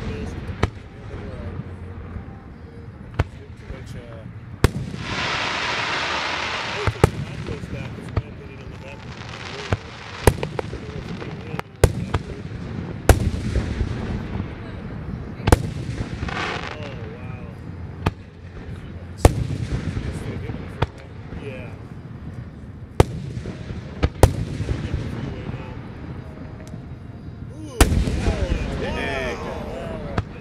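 Aerial fireworks shells bursting in a dense finale barrage, sharp booms coming every second or two, with denser stretches between them.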